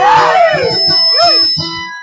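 Live Dayunday music: a small string instrument plays while a voice bends through the end of a sung phrase; the sound dies away near the end.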